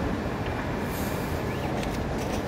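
Steady low rumble of airport terminal background noise, with a few faint ticks about a second in and near the end.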